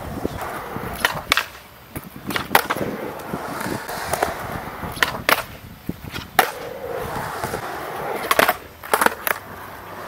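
Skateboard wheels rolling on concrete, broken by about a dozen sharp clacks as the board's tail, nose and wheels strike a low concrete ledge and the ground during stall tricks.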